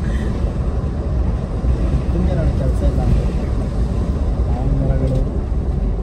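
Steady low rumble of a moving vehicle and wind on the microphone while riding along a road, with faint voices underneath.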